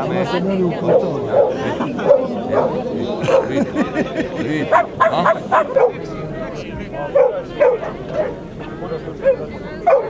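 Dogs barking, many short barks in quick succession, over a background of crowd chatter.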